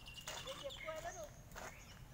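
Faint distant voices over quiet open-air background.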